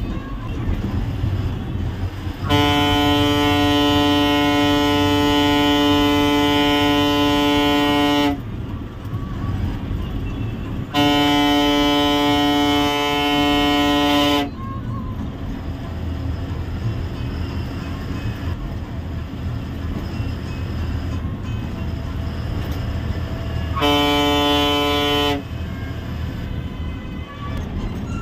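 A bus horn sounds three long, steady single-pitch blasts, about six seconds, three and a half seconds and a second and a half long. Under them the Ashok Leyland bus's diesel engine runs steadily, heard from the cabin.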